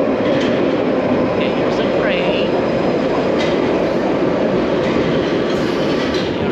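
London Underground Piccadilly line tube train pulling into the platform, a steady loud rumble of wheels and motors.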